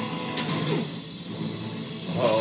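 Film sound effects played on a television and picked up through the room: a steady mechanical whirring, like a large machine running.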